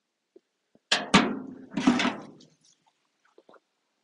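A few knocks and thuds: two sharp knocks about a second in, then a duller thud with a rustling tail near two seconds, followed by a few faint ticks.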